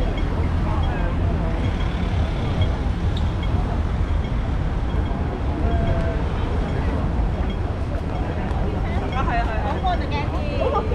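Busy city street ambience: a steady low rumble of traffic under the murmur of passing pedestrians' voices, with one voice standing out near the end.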